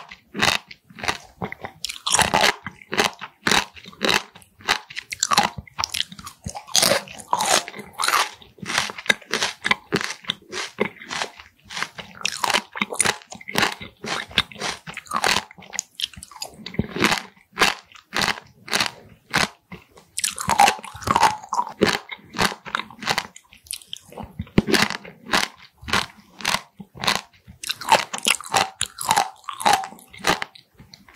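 Close-miked chewing of raw Styela plicata sea squirts: a dense run of wet, crunchy bites and chews, with louder bursts several times as fresh pieces are bitten.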